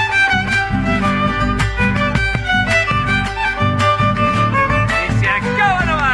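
A chacarera, Argentine folk music led by a violin over a steady, rhythmic accompaniment, with a run of falling notes near the end.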